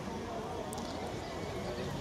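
Hoofbeats of a Haflinger horse cantering on turf, under a steady murmur of people talking in the background.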